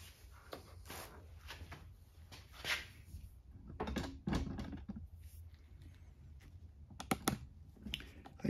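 Light, scattered clicks and knocks of small metal carburetor parts being handled and set down in a plastic drain pan of gasoline, with a quick cluster of clicks near the end.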